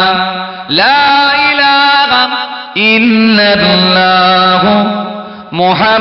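A man's voice chanting 'Allah' in long drawn-out sung phrases, zikr (dhikr, remembrance of God). Each phrase opens with a rising swoop into a held note; one ends early on and new phrases begin about a second in, about three seconds in and near the end.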